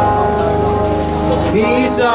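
Hymn music with steady held chords, a voice sliding in near the end as the singing begins, over a steady hiss.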